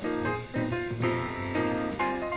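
Recorded modal jazz from a quartet: acoustic piano soloing in chords, with drums and bass accompanying underneath.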